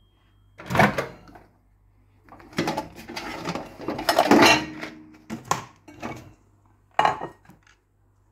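Microwave oven door opened with a click, then a plate clattering and scraping on the glass turntable as it is taken out, and another click near the end.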